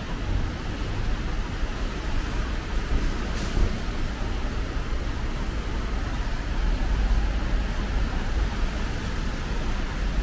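Road traffic passing on wet streets: a steady wash of tyre noise with a low rumble. A short hiss cuts in briefly about a third of the way through.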